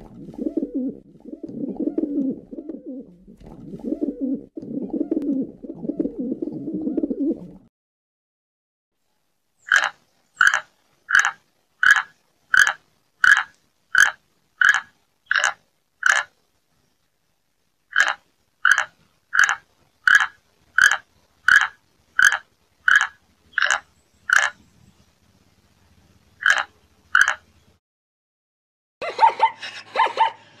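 Rock pigeons cooing in two long rounds. Then an aracari calls: a long run of sharp, evenly spaced notes, about one and a half a second, broken by two short pauses.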